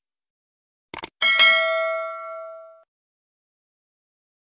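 Subscribe-button animation sound effect: a quick double click about a second in, then a single bright notification-bell ding that rings out and fades over about a second and a half.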